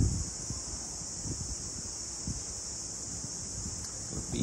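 Wind gusting on the microphone as an uneven low rumble, over a steady high-pitched drone of insects.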